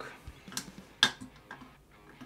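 Small metal parts of a disassembled folding knife clicking as they are handled and set down in a parts tray: three light clicks, the sharpest about a second in.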